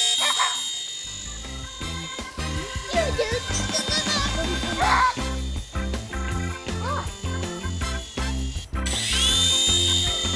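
High-pitched whine of a toy remote-control helicopter's small electric rotor motor, fading after a couple of seconds, then spinning up again with a quick rising whine near the end and holding steady. Background music with a beat plays under it.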